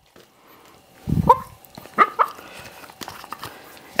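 A dog barking: one low bark about a second in, then two short, higher barks around the two-second mark.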